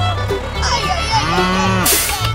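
A cow mooing, one low call in the second half, over upbeat fiddle background music, with a short rush of noise right at the end.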